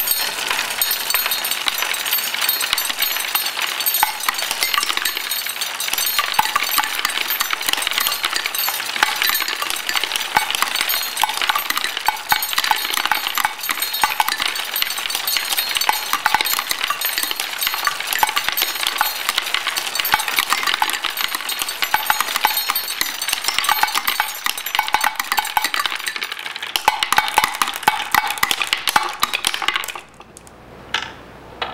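Hand-cranked wooden marble machine running: a steady, dense clatter of glass marbles clicking and clinking as they roll through wooden tracks and a nail pegboard and strike metal parts.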